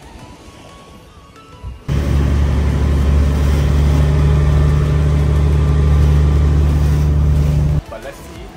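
A boat engine running steadily at speed, with water rushing past. It starts abruptly about two seconds in and cuts off just before the end.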